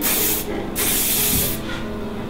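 Aerosol can of hairspray sprayed onto a head of hair in two hissing bursts: a short one at the start and a longer one of about a second.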